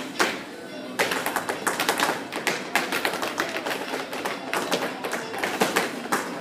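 Ballet folklórico zapateado: dancers' shoes striking a hard floor in quick, dense taps that thicken about a second in, over a recorded song playing.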